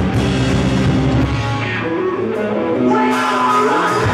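Rock band playing loud live through a PA, electric guitars and drum kit. About a second and a half in, the drums and bass drop out and electric guitar plays on alone, and the full band comes back in at the very end.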